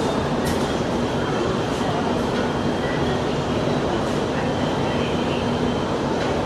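Steady hum inside a metro train car standing at a station platform, with faint passenger voices.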